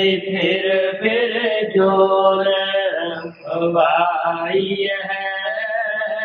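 A man's voice chanting a devotional verse in a slow melody of long held notes, with a short breath about three and a half seconds in.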